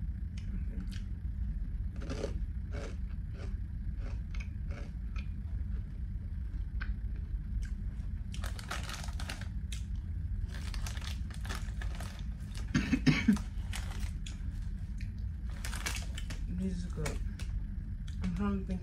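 Crunching and chewing on a thin, hard, spicy rolled corn chip, with short crisp snaps, while a foil snack bag crinkles in several bursts.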